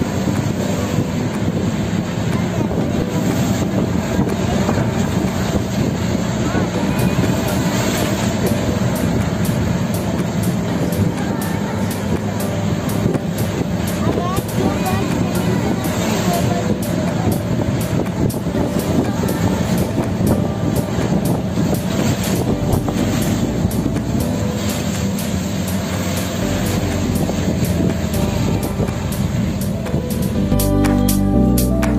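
Steady outdoor background noise, heaviest in the low range, with indistinct voices mixed in.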